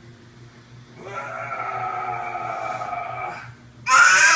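A baby's long, drawn-out vocal "aaah", starting about a second in and held steady for over two seconds before dipping slightly in pitch, then a sudden louder squeal right at the end.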